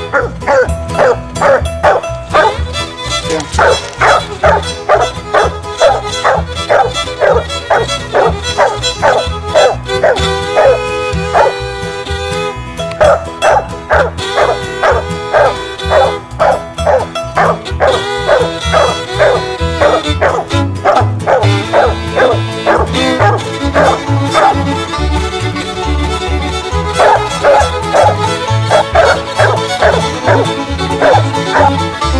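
Background music with a steady low beat, along with a hunting dog barking over and over in quick repeated barks: a treeing bark, the dog holding at a tree where she has scented game.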